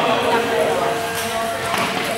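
Table tennis ball clicking off bats and the table in a short serve-and-return exchange, heard over the background voices of a large hall.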